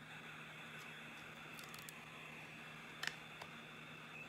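Faint steady hiss of room tone, with a light click about three seconds in as the board book's page is handled and turned.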